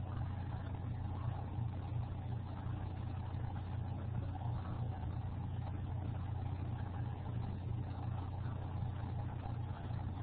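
Steady low hum with a faint hiss: background noise picked up by an open microphone.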